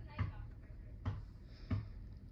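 A basketball being dribbled on pavement: three dull bounces, unevenly spaced a bit under a second apart, with faint voices in the background.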